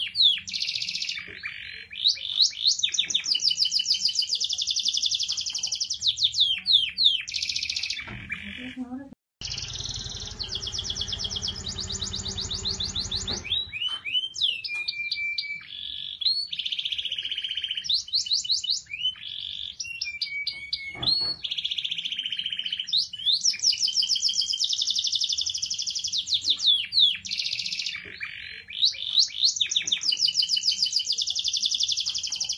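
Domestic canary singing: long, fast rolling trills and chirps, high-pitched. The song stops for a moment about nine seconds in, and a low rushing noise sits under it for a few seconds after.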